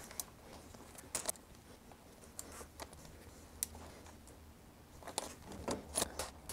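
Faint scattered clicks and taps of metal parts being handled on a Thudbuster seat post's saddle-rail clamp, bunched more closely near the end, over a faint steady low hum.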